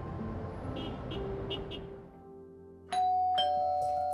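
Background music fading out, then about three seconds in a two-tone doorbell chime rings, a higher ding followed by a lower dong that rings on.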